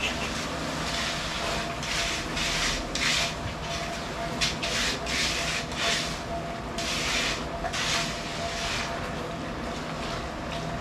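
Hand trowel scraping across wet concrete in irregular rasping strokes, roughly one or two a second, over the steady hum of an electric drum concrete mixer.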